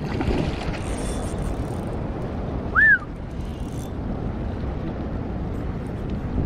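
Wind buffeting the microphone over the lapping of river water close by, a steady rushing noise. About three seconds in there is a single brief high chirp that rises and falls.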